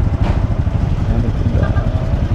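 Motorcycle engine idling close by, a steady rapid low pulsing.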